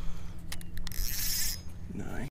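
Spinning reel and fishing line being handled while line is let out to drop a jig: a few sharp clicks, then a brief hiss about a second in.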